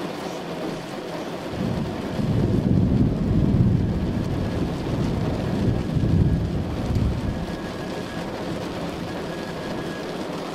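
Steady heavy rain, with a long roll of thunder that builds about a second and a half in, peaks twice and dies away about seven seconds in.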